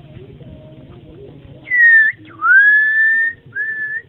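Three loud, clear whistled notes in the second half. The first dips slightly, the middle one slides up and then holds, and a short third note comes near the end.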